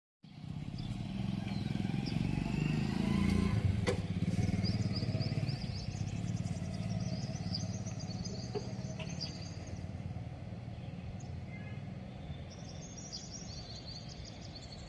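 A vehicle engine running close by, loudest about three to four seconds in and then slowly fading, with birds chirping over it.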